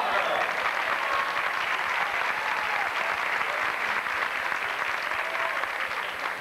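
Audience applause: dense clapping that holds steady throughout.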